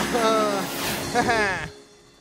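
A cartoon character's wordless, drawn-out joyful cries as he flies with a rocket pack, over a low rumble and a rushing whoosh; it all fades out near the end.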